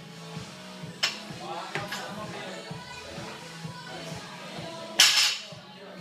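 Background music with a steady beat, over which a loaded barbell with bumper plates is handled: a sharp clank about a second in, and a loud, brief crash about five seconds in as the bar comes down to the floor.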